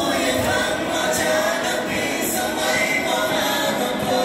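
A song sung by many voices together, like a choir, with music, filling a large stadium.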